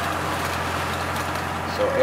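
Steady running noise of a tractor-mounted mechanical shoot positioner, engine and machinery together, as its barrels push through dense grapevine canopy.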